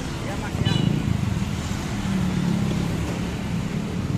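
Steady low engine rumble of road traffic, with a motor running close by throughout.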